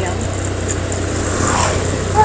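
Motorbike engine running steadily while riding, under a thin, steady, high-pitched insect buzz. An oncoming scooter passes close about a second and a half in, with a brief swell of engine and rushing noise.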